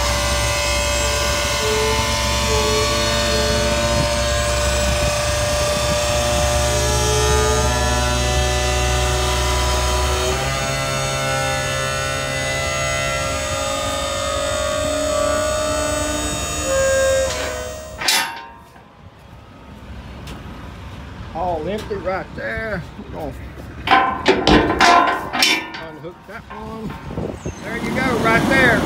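Dump trailer's scissor hoist working the bed down, its dry pivots squealing and groaning in several shifting tones over a low hum; the pivots need grease. The squealing cuts off suddenly about eighteen seconds in, followed by scattered knocks and clicks.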